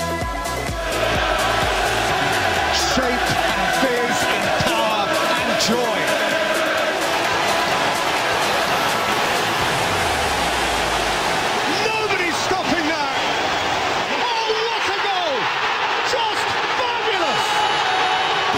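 Football stadium crowd noise from a match broadcast: a dense, steady din of voices and chanting that comes in about a second in, as electronic background music gives way. A low music bass stays underneath until about the middle.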